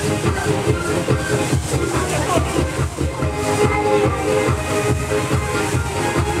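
Electronic dance music with a steady beat, accompanying a pom-pom cheer routine.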